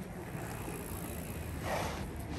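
Steady outdoor street background noise, with a short soft puff of breath near the end.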